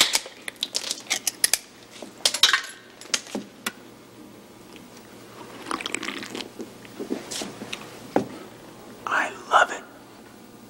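Drink cans being handled: a sharp click right at the start, a run of small clicks and knocks over the next few seconds, then soft drinking sounds around the middle. Two short voice-like sounds come near the end.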